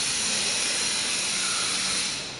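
A steady high-pitched hiss that swells up, holds, and fades off at the end.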